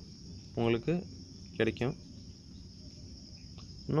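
Two short spoken syllables in the first two seconds, then a pause with only a steady high-pitched hiss in the background.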